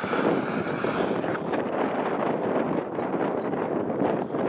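Steady rumble of a CN diesel-hauled freight train rolling on the line, a noisy roar with faint clicks, mixed with wind on the microphone.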